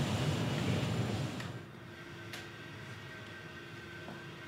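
Steady air-handling hum of building ventilation machinery. A broad rushing noise drops about a second and a half in to a quieter hum with a faint steady tone, and there are a couple of faint clicks.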